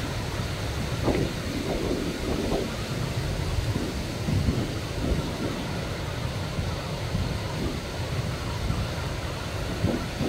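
Wind buffeting the microphone in irregular gusts over the steady wash of breaking surf.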